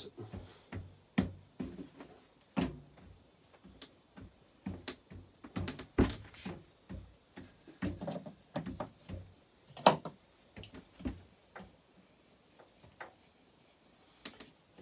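Hands kneading and pressing bread dough on a galley worktop: irregular soft thumps and knocks, with a couple of sharper knocks about six and ten seconds in.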